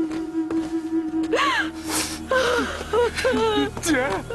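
Mourners wailing and sobbing, with short rising and falling cries that start about a second in and come thick and fast by the end, over a held note of music that fades about halfway.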